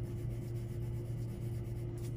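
Black oil pastel rubbed on paper in faint, repeated scratchy strokes, laid down as the dark end of a black-to-white blend, over a steady low electrical hum.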